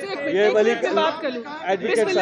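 Speech only: a woman talking, with other voices from the crowd around her.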